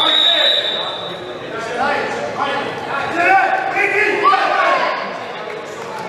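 A referee's whistle blows one long, steady blast at the start, followed by several voices calling out, echoing in a sports hall.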